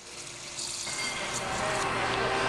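Bar soda gun dispensing cola into a glass of ice: a steady fizzing hiss of the pour that builds up over the first second.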